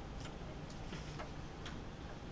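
Faint, irregular light ticks, a few in two seconds, over a low steady room hum.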